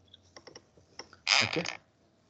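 A quick run of light computer-keyboard key clicks during the first second or so.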